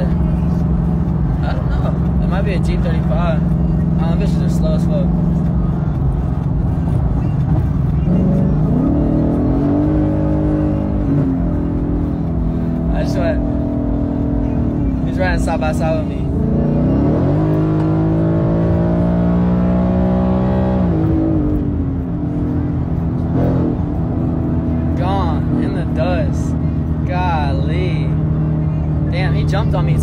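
Car engine and road noise heard inside the cabin, the engine pulling hard and climbing in pitch twice, about nine seconds in and again from about seventeen to twenty-one seconds, then easing off. Music with singing plays over it.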